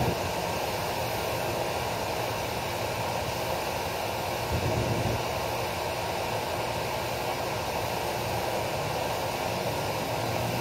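Steady mechanical drone of nearby machinery: an even rushing noise over a low hum, with no breaks.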